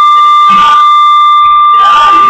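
Loud, steady high-pitched whistle of microphone feedback ringing through a church PA system, holding one pitch throughout. Bits of singing voice come through about half a second in and near the end.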